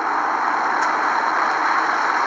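Steady rushing background noise with no speech.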